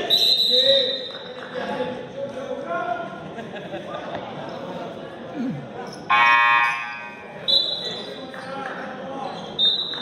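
A referee's whistle blown as a player goes to the floor, stopping play for a foul. About six seconds in, the gym's scoreboard buzzer sounds for under a second, then come two more short whistle blasts, with players' voices echoing around the hall.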